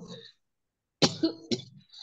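A person coughing about a second in, with a second, smaller cough about half a second later.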